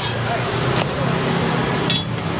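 Scallion pancake frying in oil in a round pan, sizzling as a steady hiss, with a metal spatula clicking against the pan twice. A steady low hum and background chatter run underneath.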